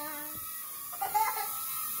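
Small toy UFO drone hovering, its propeller motor giving a faint steady whine. A child's drawn-out voice fades out just at the start, and there is a short vocal sound about a second in.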